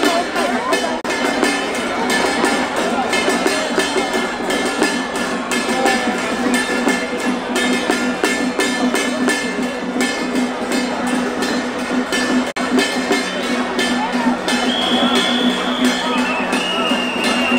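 Loud procession music with rapid, evenly repeated percussive strikes over a held low note, mixed with voices from the crowd. A higher held tone joins near the end.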